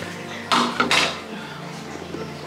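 Crockery and steel utensils clinking against each other in a short clatter about half a second in.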